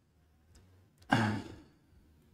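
A man's single short sigh about a second in: a breathy exhale with a little voice in it, strongest at the start and trailing off. Two faint clicks come just before it.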